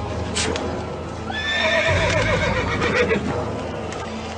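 A horse whinnying once: a long, wavering call that starts a little over a second in and fades after about two seconds.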